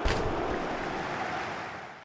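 A steady rushing noise that starts with a click and fades near the end.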